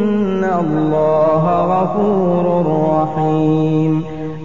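A male qari reciting the Quran in melodic tajwid, drawing out long held vowels that glide and waver in pitch, with a brief break about three seconds in.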